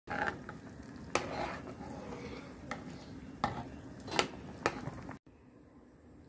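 A utensil stirring macaroni in a pan, with a scraping texture and a few sharp clinks against the pan. It cuts off about five seconds in.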